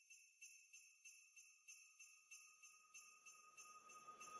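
Very faint background music fading in: a high, shimmering jingle-bell-like texture pulsing about three times a second, with one held tone underneath, slowly growing louder.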